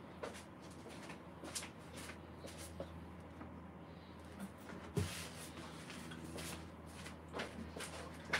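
Faint knocks and clatter of someone fetching things from a cupboard out of frame, with one louder thump about five seconds in, over a low steady room hum.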